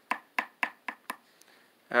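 A screwdriver tapping the skateboard's plastic truck: about five quick, sharp taps in the first second or so.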